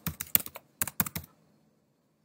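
Computer keyboard typing: a quick run of keystrokes that stops after about a second and a half.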